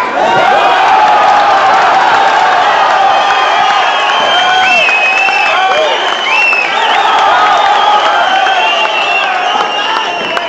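Fight crowd shouting and cheering, many voices yelling over one another, with a few long high calls in the middle.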